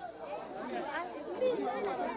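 Several people talking at once, an overlapping chatter of voices with no single clear speaker.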